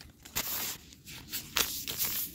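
A folded sheet of paper being opened and handled, giving a few short crinkles and rustles.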